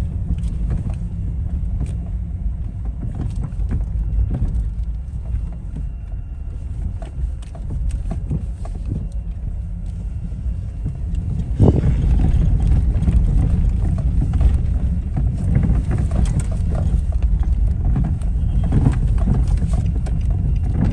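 Low rumble of slow-moving cars close by. A thump comes a little past halfway, and the rumble is louder after it.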